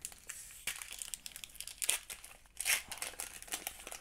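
Foil booster-pack wrapper of Pokémon trading cards crinkling and tearing as it is ripped open by hand: a run of small crackles with a few louder rips, the loudest about two and a half seconds in.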